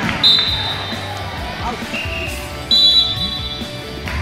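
Two short blasts of a referee's whistle, about two and a half seconds apart, the second with a doubled pitch. Chatter from the gym lies under them.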